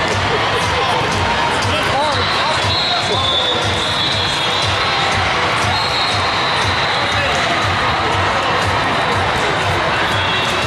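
Busy sports-hall din: crowd chatter and voices with a steady low thump about twice a second.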